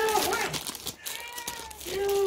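A domestic cat meowing twice: a short call with a wavering pitch at the start, then a longer, higher meow about a second in.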